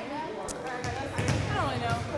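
Players' voices calling in a gym, with one sharp smack of a volleyball about half a second in.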